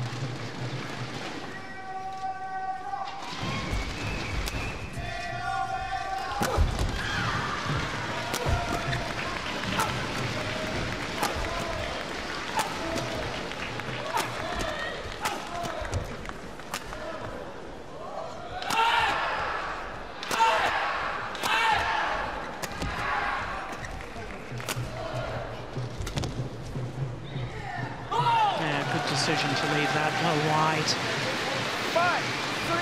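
A long badminton rally: a quick series of sharp racket strikes on the shuttlecock, with crowd voices calling and cheering in an arena, the crowd noise swelling in the second half.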